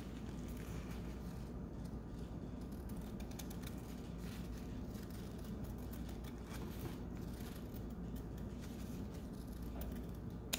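Scissors cutting slowly through folded paper: faint small snips and paper rustle over a low steady hum.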